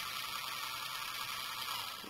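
Small DC motor of a toy RC car running steadily, a high-pitched whir as it spins the car's wheels freely off the ground; it stops near the end.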